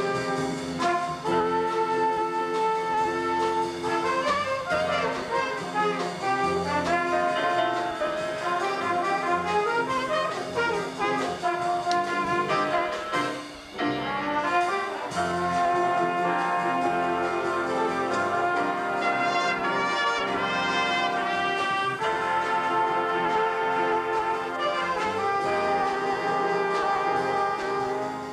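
Jazz big band playing a slightly up-tempo ballad, the brass section sounding full sustained chords under a moving melody line, with a brief break about halfway through.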